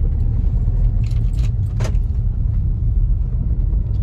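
Car cabin sound while driving: steady low engine and road rumble, with a few short light clicks about one to two seconds in.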